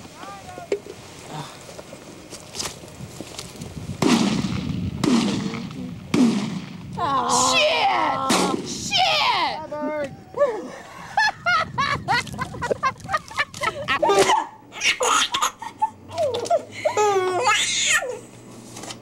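Several shotgun shots in the first half, loud and sudden, with voices and laughter between them. In the last few seconds, a baby laughing and babbling over a steady low hum.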